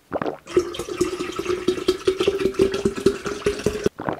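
A person chugging tomato juice from a large glass jug: one swallow at the start, then a long run of rapid gulps over a steady low tone, cut off suddenly just before the end.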